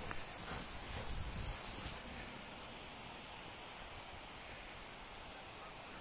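Soft rustling and crunching of deep powder snow being pushed through, strongest in the first two seconds, then settling to a faint steady hiss.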